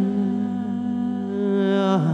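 Two male voices holding the final long sung note of a romantic pop ballad in harmony over a steady band chord, cutting off together near the end.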